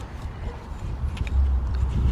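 Brick line being wrapped in figure-of-eights around a plastic corner block and snapped into its slot: a sharp click at the start, then faint small clicks and rubbing, over a low rumble that grows louder in the second half.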